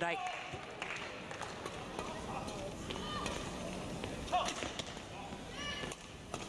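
Badminton rally in an indoor arena: sharp racket strikes on the shuttlecock and players' footwork on the court over a low, steady crowd murmur.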